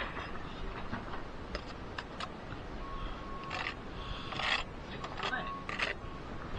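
Steel brick trowel scraping and scooping mortar on a mortar board and spreading it onto bricks: short rasping scrapes, two of them longer past the middle, with a few light clicks of the trowel against brick.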